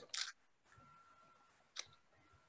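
Very quiet room tone over a video call, with a short hiss just after the start, a faint steady tone, and one sharp click near the end.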